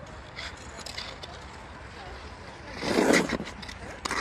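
Ice skate blades scraping and gliding over rough natural ice, with a steady haze of outdoor noise and a brief loud burst about three seconds in.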